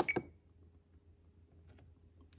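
Two short sharp clicks right at the start, then quiet room tone with a faint steady high whine.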